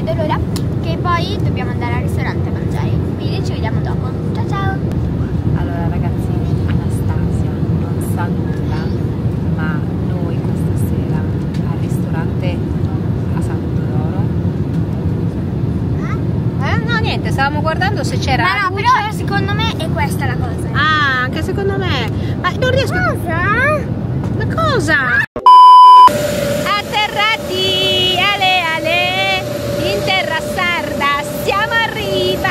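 Steady low rumble of an airliner cabin, from engine and airflow noise, with muffled passenger voices. About 25 seconds in it cuts off, a short, very loud high beep sounds, and then voices with a steady whine in the background.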